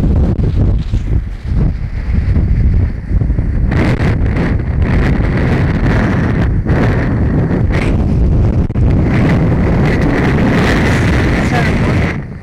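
Strong wind buffeting a camcorder's microphone: a loud, constant low rumble broken by irregular gusty crackles and pops.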